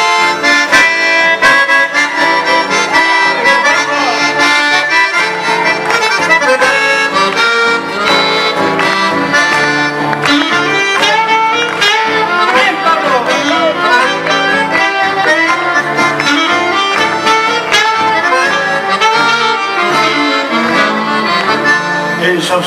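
Instrumental break in a live Argentine folk song, with accordion to the fore over the band. No singing.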